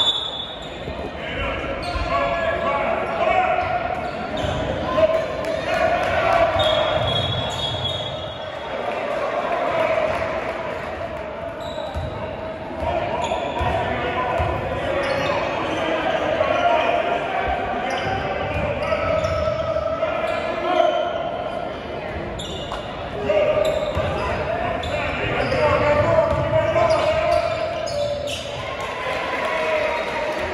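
Basketball being dribbled on a hardwood gym floor with sneakers squeaking, under indistinct shouts and chatter from players and spectators, echoing in a large gym.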